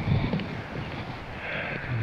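Wind buffeting the microphone outdoors: an irregular low rumble with a soft hiss over it, the hiss rising briefly near the end.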